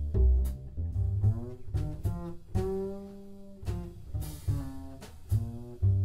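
Live jazz double bass played pizzicato: a phrase of separate plucked notes, some of them sliding in pitch.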